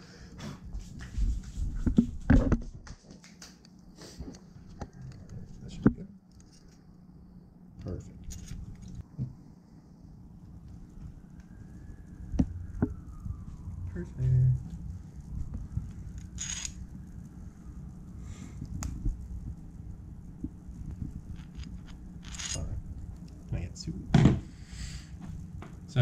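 Small parts being handled on a workbench: scattered clicks and knocks, a few of them sharp and loud, over a low background rumble.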